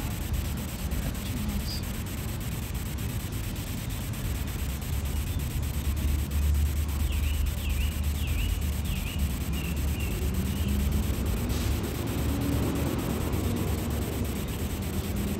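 Outdoor ambience: a steady hiss with a low rumble that swells in the middle, and a small bird chirping a few short notes in quick succession about halfway through.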